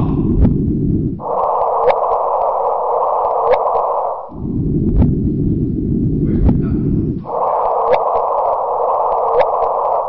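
Playback of LIGO's recording of the first detected gravitational wave. A stretch of low detector noise with a short pop from the wave alternates with a higher-pitched stretch, processed to be easier to hear, in which the signal is a short rising whoop. The pair plays twice.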